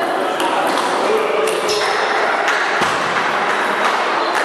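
Table tennis ball clicking off the bats and table in a rally, a sharp click every quarter to half second, ending near the end with the point over. Behind it, a steady murmur of voices and noise echoes in the hall.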